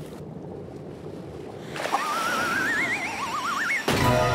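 Cartoon sound effects: a muffled underwater rumble, then from about two seconds in two rising, warbling whistle tones, cut off by a sharp crack near the end.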